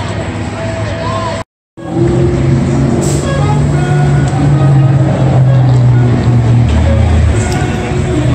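Busy city street: traffic and crowd chatter, with music and a low bass line playing over it. A brief dropout about one and a half seconds in.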